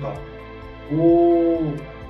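A man's drawn-out hesitation sound, one held 'ehh' lasting about a second in the middle, over steady background music.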